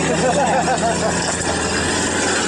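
Toyota LandCruiser troop carrier's engine running as the vehicle drives slowly past close by, its tyres churning through mud and water with a steady hiss.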